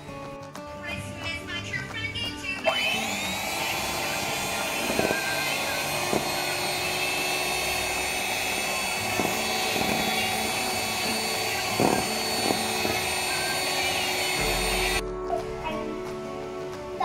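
Electric hand mixer beating egg whites into a froth in a stainless steel bowl: the motor spins up about three seconds in, runs at a steady whine, and stops suddenly near the end.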